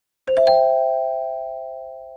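A single notification-bell chime sound effect from a subscribe-button animation: one strike about a quarter second in, ringing on a few clear tones that fade away slowly.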